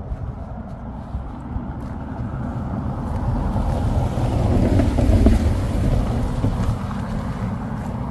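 A BMW X6 SUV passing close by on a narrow lane: its engine and tyre rumble swells to a peak about five seconds in, then fades as it pulls away.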